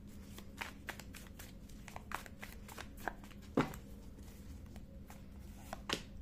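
Tarot deck being shuffled by hand: a run of soft, irregular card clicks and flicks, with one louder snap about three and a half seconds in.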